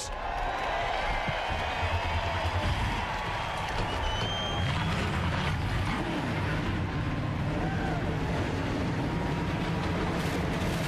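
NASCAR Cup stock cars' V8 engines firing up and running at idle, a loud, steady low rumble, with crowd cheering mixed in.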